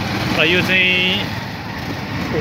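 Steady running noise of an auto-rickshaw driving along a street, with one drawn-out voiced syllable from a person about half a second in.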